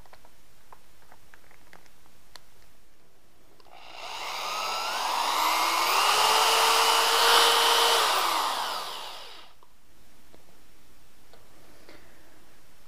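Corded electric drill spinning a wine whip inside a glass carboy of wine to degas it. The motor whine rises in pitch as it speeds up, holds steady for a few seconds, then falls as it winds down. A few faint handling clicks come first.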